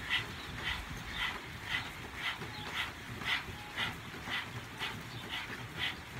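Several people panting rapidly through their stuck-out tongues, like a dog panting, in a steady rhythm of about two breaths a second. This is a Kundalini yoga breathing exercise driven from the diaphragm.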